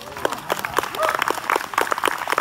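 Audience applauding at the end of a song: many hands clapping in a dense patter that starts abruptly.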